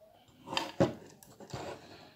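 Handling noise from a Volkswagen Saveiro G6 tailgate handle's plastic housing and metal lock parts as a spring is fitted by hand: rustling and light knocks, with a sharp click a little under a second in.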